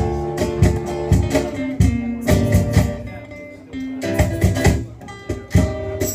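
Live band playing an instrumental passage: acoustic guitar over plucked upright double bass, with no singing.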